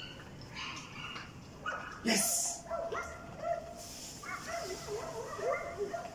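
German Shepherd puppy whining in high notes that waver up and down in pitch through the second half, after one short, sharp, loud sound about two seconds in.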